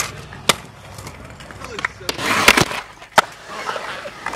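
Wheels rolling on concrete with sharp clacks of decks and landings; the loudest is a pair of hard clacks in a short rush of rolling noise about two and a half seconds in, with another clack a little after three seconds.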